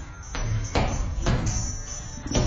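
Music playing over about four sharp thuds spread unevenly through the two seconds, punches landing on a heavy bag.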